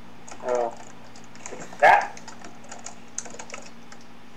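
Typing on a computer keyboard: irregular, scattered key clicks. Two brief, wordless vocal sounds break in about half a second and about two seconds in, the second louder and sharper.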